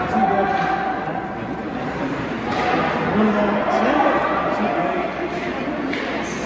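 Indistinct voices talking off-microphone, echoing in the large hall of an indoor ice rink.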